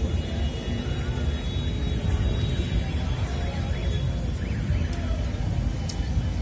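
Low, steady rumble of busy city street traffic, cars and buses running and passing close by.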